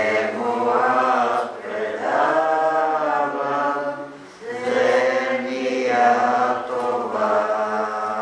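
Slow religious chant sung in long, held phrases, with a short break about four seconds in.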